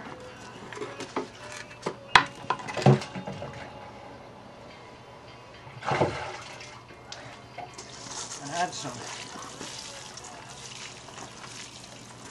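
Water poured from a watering can onto a wheelbarrow load of clay, sand and straw cob mix, a steady splashing hiss through the second half. Two sharp knocks sound about two and three seconds in.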